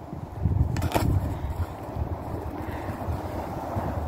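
Wind buffeting the phone's microphone, a steady low rumble, with one short sharp crackle about a second in.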